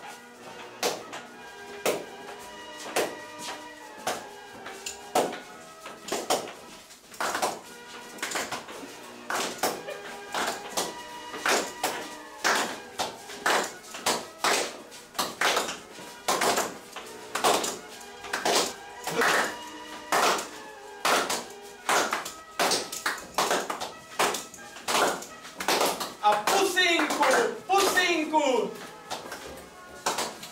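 Footsteps of a group marching on a hard floor, sharp irregular knocks about one to two a second, over steady background music. A voice comes in near the end.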